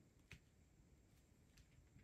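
Near silence: room tone, with one faint click about a third of a second in.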